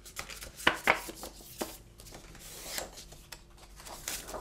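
A sheet of card being folded in half and creased by hand: a few sharp taps in the first second and a half, then a longer rubbing stroke of fingers along the fold.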